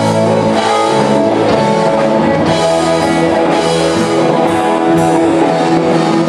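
Live blues-funk band playing, with electric guitars, bass and drum kit.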